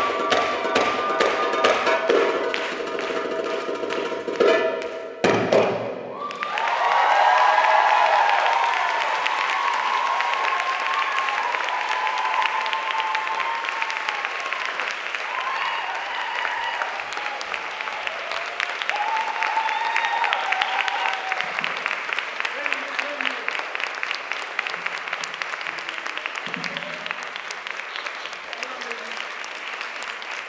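Arabic tabla (darbuka) drum-solo music, with rapid drum strokes over a melody, ends on a final hit about five seconds in. Audience applause and cheering with whoops follow, loudest just after the music stops, then settling into steady clapping.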